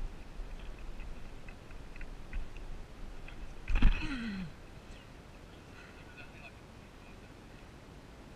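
Wind rumbling on the microphone with faint short chirps, and one brief loud sound falling in pitch about four seconds in, likely a short vocal exclamation.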